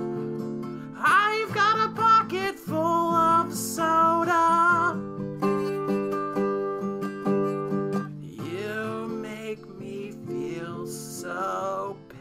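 A song with strummed acoustic guitar and a sung vocal. The voice comes in about a second in, drops out for a few seconds while the guitar carries on, and sings again near the end.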